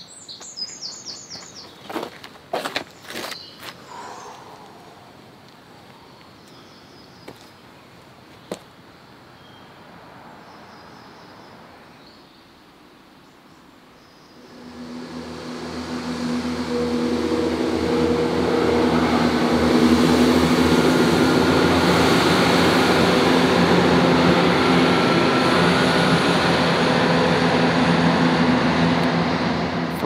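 A few bird chirps and sharp clicks in a quiet wood. From about halfway, a diesel train comes in, and its engine and rail noise build over a few seconds into a loud, steady passing sound with a low engine hum.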